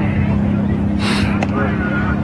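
A steady low hum, engine-like, under faint voices, with a short hiss about a second in.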